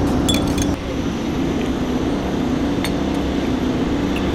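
Light glassy clinks from a small Turkish tea glass and its saucer being handled: a few quick clinks about half a second in and a single faint one about three seconds in. Under them runs a steady low street rumble.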